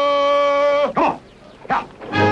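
A long drawn-out shouted call held on one pitch, dropping away at its end, then two short calls.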